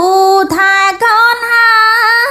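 A high voice singing a Cambodian folk song in long held notes that slide between pitches. There are three phrases, the last held for about a second.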